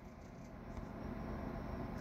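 Faint scratchy hiss of a carbide inverted-cone burr in a micro motor handpiece cutting hair texture into cottonwood bark, growing a little louder after about half a second.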